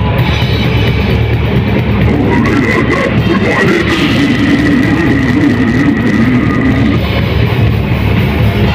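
Brutal death metal band playing live: loud, dense distorted guitars over a pounding drum kit, with a wavering pitched line through the middle seconds.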